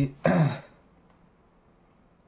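A man clearing his throat once, briefly, about a quarter of a second in.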